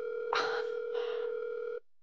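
Telephone ringback tone: one long steady tone of nearly two seconds that cuts off suddenly near the end. It is the sign of an outgoing call ringing unanswered.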